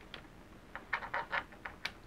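A quiet run of small, quick clicks and taps, several in the second second, from fumbling the Olight S1R's magnetic charging connector onto the flashlight's tail.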